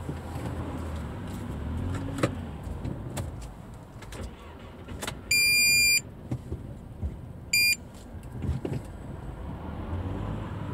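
Car engine running at low speed in slow traffic, heard from inside the cabin, with a few small clicks and knocks. A loud high-pitched electronic beep sounds about five seconds in, lasting under a second, followed by a short second beep about two seconds later.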